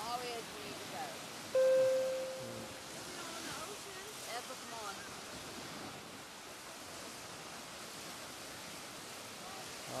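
Steady surf washing on a sandy beach, with faint distant voices. About a second and a half in, a loud single steady tone sounds suddenly and fades out after about a second.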